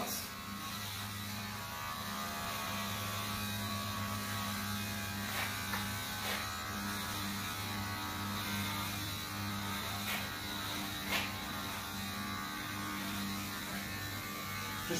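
Electric hair clippers running with a steady low hum while taking bulk out of a man's hair, with a few faint clicks.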